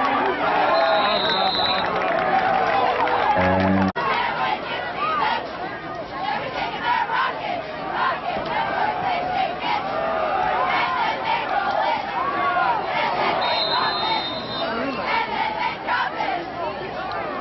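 Football crowd in the stands cheering and shouting, many voices at once. A short high whistle blast comes about a second in and again near the end.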